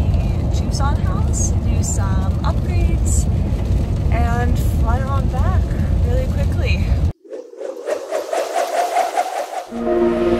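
Car road noise inside the cabin, a steady low rumble with a quiet voice over it, cutting off suddenly about seven seconds in and giving way to electronic intro music.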